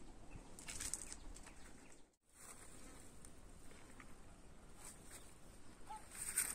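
Faint outdoor ambience with a few soft rustles and scuffs. The sound cuts out completely for a moment about two seconds in.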